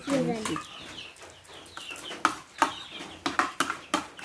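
Chickens calling with many short, repeated falling chirps, over sharp clicks of spoons against plates.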